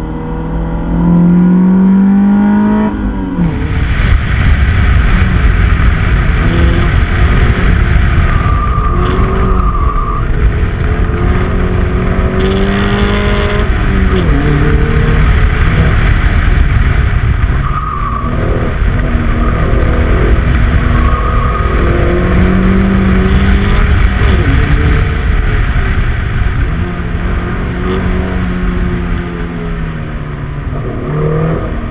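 Opel Speedster's naturally aspirated 2.2-litre four-cylinder engine driven hard on track, its pitch climbing and then dropping at each gear change, several times over. Heard briefly from inside the cabin, then from a camera on the outside of the car, with strong wind rush over the microphone from about three seconds in.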